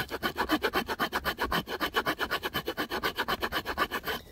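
Small multitool wood-saw blade of an MKM Campo 8 sawing through a branch in rapid, even back-and-forth strokes, cutting easily, stopping right at the end.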